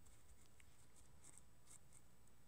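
Near silence: room tone with a string of faint, short scratchy rustles and ticks.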